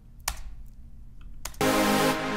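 Two faint clicks, then about three-quarters of the way in a trance-style sawtooth synth lead starts playing a simple melody. This is the dry original lead, before any OTT upward compression is added.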